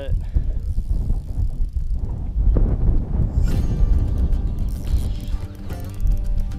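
Spinning reel's drag ticking fast as a hooked redfish runs from the net and pulls line, starting about halfway through. Wind rumbles on the microphone throughout.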